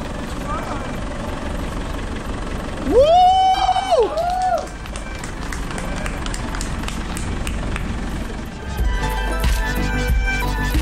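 Merlo telehandler's diesel engine running steadily while it holds the load on its boom. About three seconds in, a loud drawn-out tone rises, holds for about a second and falls away, and music with a heavy bass comes in near the end.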